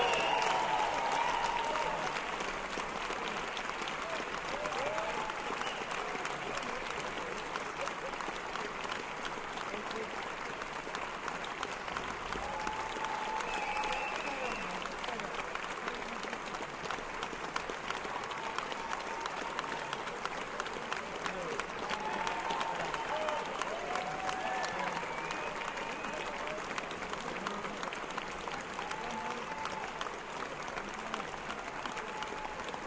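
Large audience applauding steadily, loudest at the very start, with scattered cheers rising out of the clapping.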